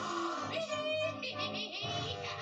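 A cartoon monster's animal-like growl, voiced for Pearl the whale as a fanged beast, over tense background music, played through a TV's speaker.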